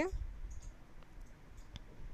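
Metal spatula stirring crisp roasted poha flakes in a metal kadhai: a few faint, scattered clicks and scrapes.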